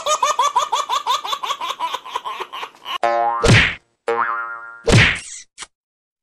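Cartoon boing sound effect: a springy wobble repeating about four times a second and fading over about three seconds. It is followed by a buzzy held tone and a few short, sharp swishing hits.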